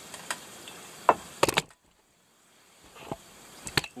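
The camera being bumped and handled: a few sharp knocks and rubs, loudest about a second and a half in. Just after that the sound cuts out almost to silence for about a second, then more knocks follow near the end.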